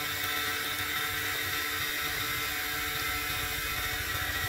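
Small motor of a miniature toy water pump whirring steadily with a constant high whine, as the pump runs and pushes out a stream of water.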